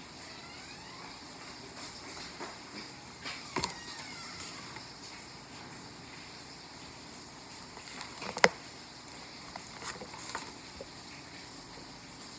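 Quiet eating and food-handling sounds: a few sharp clicks and small rustles from a fry box and cheese cup, the loudest click about eight seconds in, over a low steady background noise.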